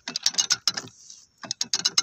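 A hand-operated ratchet rail drill clamped to a steel rail, its ratchet clicking rapidly as the lever is worked while drilling a hole through the rail. There are two quick runs of clicks, separated by a short pause near the middle.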